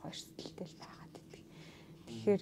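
Faint, soft voice, close to a whisper, with a breathy hiss near the start, in a short lull between louder speech.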